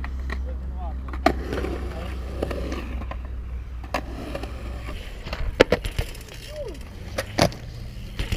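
Skateboard wheels rolling over a concrete bowl with a steady low rumble that stops about five seconds in, broken by several sharp clacks of the board, the loudest a little past halfway.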